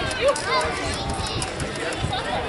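Several people talking at once in the crowd, overlapping voices with no single clear speaker, and a few faint clicks mixed in.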